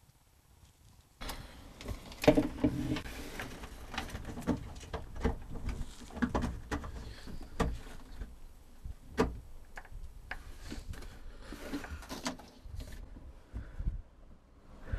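Near silence for about a second, then irregular knocks, taps and rubbing close to the microphone from a hand working inside a jet ski's hull as a fish-finder transducer is clicked into its antifreeze-filled base flange.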